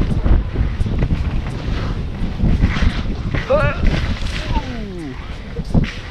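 Wind rushing over the microphone and skis sliding over packed snow during a downhill run. About three and a half seconds in, a person gives a short wavering whoop, followed by a falling, wailing call.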